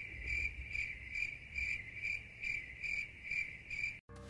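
Cricket chirping sound effect, a steady train of short high chirps about two a second, used as the comic cue for an awkward silence where applause would be expected.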